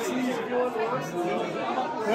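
Several people talking at once: indistinct chatter of overlapping voices in a busy room.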